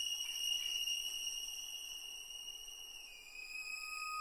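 Quiet passage of a symphony for orchestra and tape: a single high, steady held tone with overtones, dropping slightly in pitch about three seconds in.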